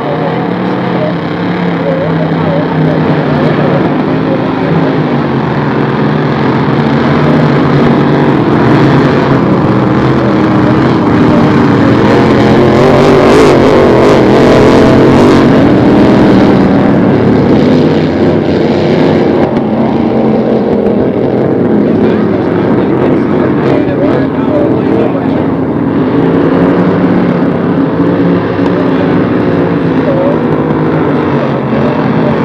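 Several Grand Prix class inboard racing hydroplanes running at racing speed together, their engines overlapping in wavering pitches. The sound builds to its loudest about halfway through as the pack passes, then eases slightly.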